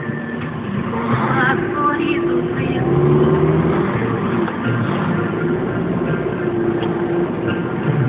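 Toyota car driving, its engine running with road noise, getting a little louder about three seconds in.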